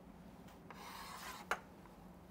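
Chalk scraping across a chalkboard in one long stroke lasting under a second, ending in a sharp tap.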